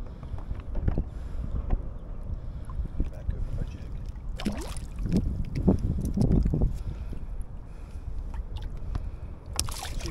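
Water sloshing against a kayak hull with wind rumbling on the microphone, and faint voices around the middle. A short splash near the end as a released fish kicks away from the hull.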